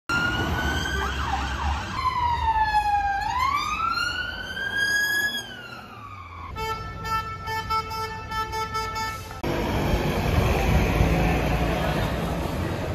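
Police siren wailing, its pitch sliding down and back up in long sweeps, in several passages cut together. Then a steady tone beeps about three times a second for about three seconds, and the last couple of seconds are street traffic noise.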